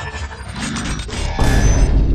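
Intro sound effects: a rapid run of mechanical clicking and ratcheting, then a loud, deep booming hit about one and a half seconds in.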